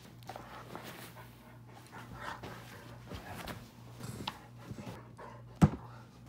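A husky moving about with faint panting and shuffling, and one sharp knock near the end that sounds like a painful bump.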